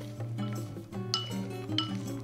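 Background music, with fried peanuts being stirred with a wooden spoon in a ceramic bowl: two short clinks, about a second in and near the end.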